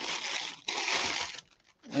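Clear plastic bag crinkling as an action figure is pulled out of it, in two stretches of rustling that stop about one and a half seconds in.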